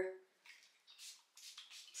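A few quick, faint hissing spritzes from a Sol de Janeiro fragrance mist pump spray bottle.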